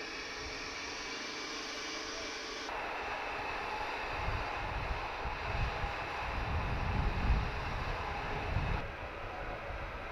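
Steady outdoor noise with low, irregular gusts of wind buffeting the microphone from about four to nine seconds in; the background changes abruptly about three seconds in.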